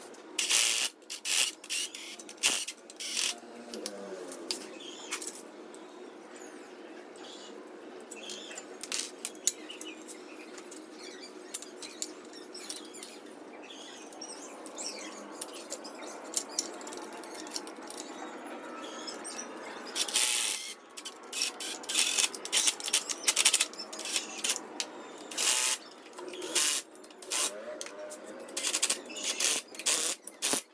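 Cordless impact driver running in short bursts to fasten the leaf-spring mounting bolts on a steel axle, mixed with metallic clinks of bolts, brackets and tools being handled. Busiest in the first few seconds and again over the last ten, with only light clinking in between.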